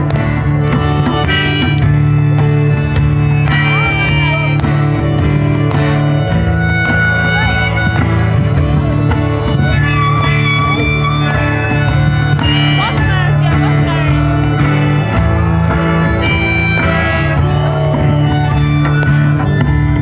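Live acoustic music: two acoustic guitars strumming chords under a harmonica playing a lead line of held notes, an instrumental break without singing.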